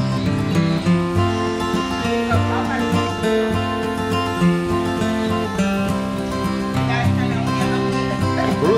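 Background music led by acoustic guitar, with a steady line of sustained notes over a moving bass, and faint voices showing through in places.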